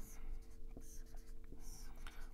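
Dry-erase marker drawing on a whiteboard: several short, faint scratchy strokes as lines and arrows are drawn.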